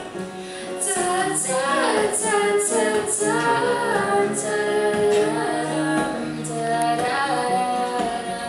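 Live acoustic duo: female singing over two acoustic guitars, the voice coming in strongly about a second in and carrying a long, wavering sung line.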